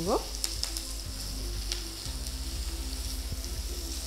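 Hot oil sizzling steadily in a kadai as green chillies, peanuts, chana dal and curry leaves fry in a tempering with turmeric, with a few faint ticks.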